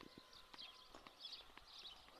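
Near silence: the quiet of the countryside at dawn, with faint bird chirps and a few soft footsteps on asphalt.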